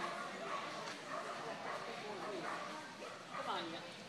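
Weimaraner barking and yipping in short repeated calls, with people's voices mixed in.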